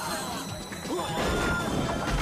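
A crash of boxes being knocked over and smashed in a fight, over dramatic action music, with men shouting.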